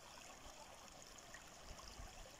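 Near silence, with the faint, steady trickle of a shallow stream running over rocks.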